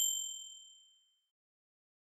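A bright, bell-like notification ding, the sound effect of a subscribe-button animation, fading away within about a second.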